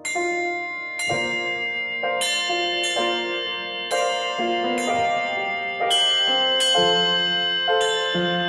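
Brass handbells hung on a stand and struck with a mallet, playing a slow hymn tune. A new note sounds every half second to a second, and each one rings on under the next.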